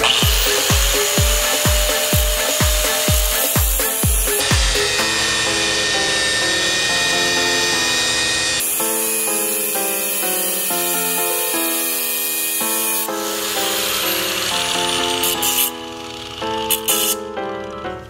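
Angle grinder with a cut-off disc spinning up and cutting through the steel governor arm of a small engine, then winding down about three-quarters of the way through. Electronic music with a thumping beat plays throughout.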